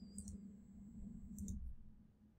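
Faint computer mouse clicks, a couple of them about a second apart, over a low steady hum.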